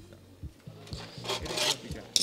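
Coarse skateboard grip tape scraping and rubbing against the wooden deck as the freshly trimmed board and its offcut are handled, with a short run of gritty rasps about a second and a half in.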